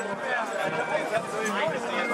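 Several people talking at once: background crowd chatter with no single clear speaker.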